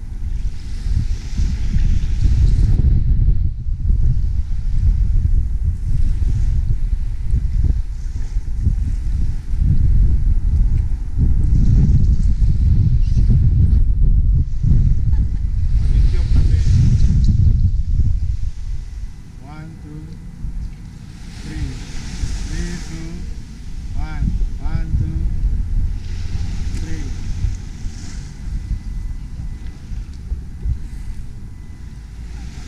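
Wind buffeting the microphone, heavy through the first two-thirds and then easing off, over the faint wash of bay water. Distant voices come through once the wind drops.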